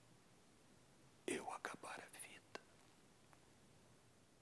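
A man's breathy, whispered gasps and exhalations, starting a little over a second in and lasting about a second, ending with a small click. They are acted as a dying man's last breaths; otherwise near silence.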